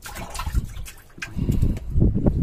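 Water splashing briefly in a bait bucket as a live shrimp is taken out by hand, followed by quieter handling noise.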